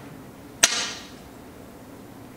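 A single sharp click with a short ringing tail as a go stone is placed against a large demonstration go board.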